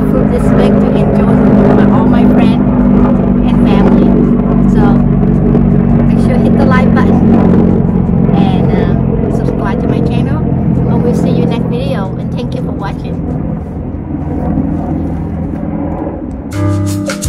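A steady low mechanical hum like an engine running, easing off over the last few seconds, under people's voices talking now and then.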